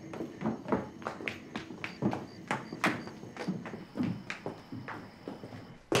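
Footsteps of shoes on stone paving, a steady walking pace of about three sharp steps a second.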